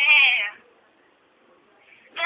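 A woman singing unaccompanied in a high voice, the end of one sung phrase fading out about half a second in, then a pause for breath.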